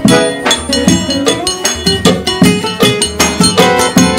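A forró trio plays the instrumental opening of a song at a steady dance rhythm. The accordion carries the melody over the zabumba bass drum, the triangle and strummed acoustic guitar.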